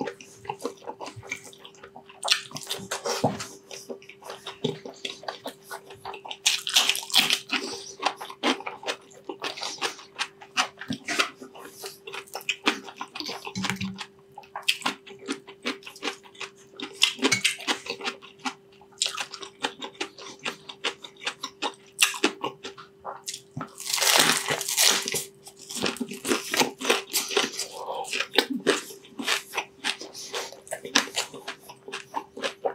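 Close-miked eating of crispy deep-fried pork mesentery (chicharon bulaklak) with rice: crunching bites and chewing, with louder clusters of crunches a few seconds in and again about three-quarters of the way through.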